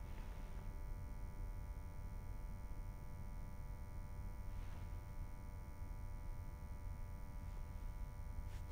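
Steady low electrical hum with a faint buzz of fixed overtones: quiet room tone. A faint soft brushing sound comes near the start and again about halfway through.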